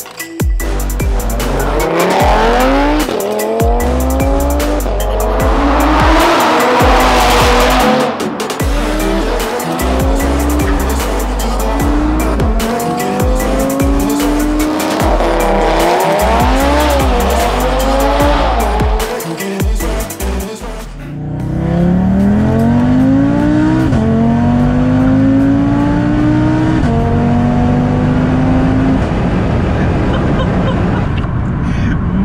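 Audi RS3 saloon's tuned turbocharged five-cylinder engine pulling hard through the gears, its pitch rising through each gear and dropping back at every upshift. For about the first twenty seconds electronic music with a heavy bass beat plays over it; then the music stops and the engine carries on alone through several more upshifts.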